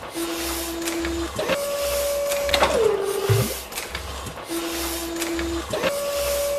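Sound-designed robotic machinery: motor whines that hold a pitch and then glide down, with clicks where they change, over a low pulsing beat. The cycle repeats about every four seconds.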